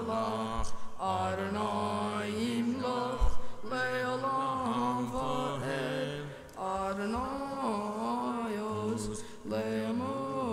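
A young male voice chanting Hebrew liturgy in a melodic prayer chant, holding and sliding between sustained notes with only brief breaths. A short low thump is heard about three seconds in.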